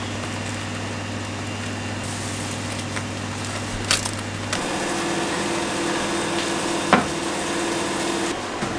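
Banana leaf handled and folded around a fish on a stone countertop, with light rustling and a couple of soft knocks over a steady kitchen hum and hiss. About halfway the background changes to a steadier, higher hum, and a sharp click comes near the end.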